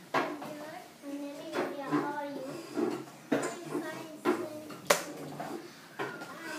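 A child speaking, with a few sharp knocks in among the words.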